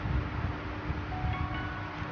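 A few faint chime-like ringing tones at different pitches, about halfway through, over a low steady rumble.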